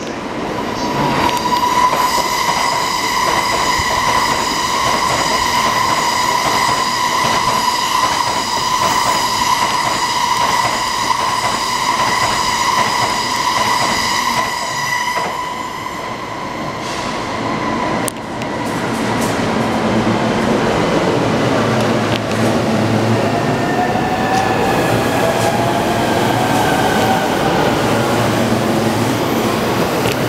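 E231 series electric train accelerating away from a platform. A steady high whine with overtones runs for about the first seventeen seconds, then gives way to shifting, rising pitch glides as it gathers speed, over the rumble of wheels on rail.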